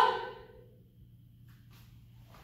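The tail of a short laugh fading out in the first half second, then quiet room tone with a faint brief rustle about a second and a half in.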